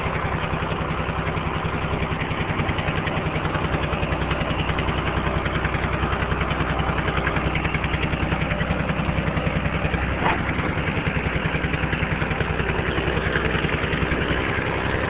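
An engine idling steadily, with an even, low pulsing throb. A brief higher sound cuts in about ten seconds in.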